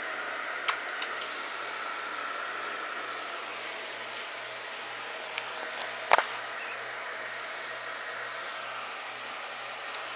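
Steady hiss of room noise, like a running fan, with a faint low hum under it. A few light clicks come in the first second or so, and a single sharp knock about six seconds in.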